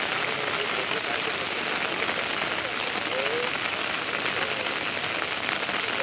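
Steady heavy rain falling, an even continuous hiss.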